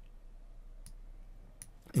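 Two faint, short clicks about a second in and again near the end, over low room noise.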